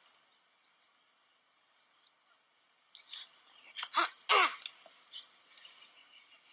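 Near silence for about the first half, then a short flurry of sparring: sharp slaps of hands striking and blocking, with two brief cries that fall in pitch about four seconds in.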